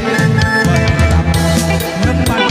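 Live band music played loud through a PA: a steady drum kit beat with bass drum and snare under a bass line and instrument melody.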